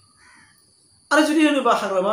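A man's voice speaking: a short pause, then speech resumes loudly about a second in.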